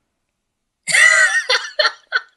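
A man laughing, starting about a second in: one long high-pitched laugh, then short, quick laughs in rapid succession.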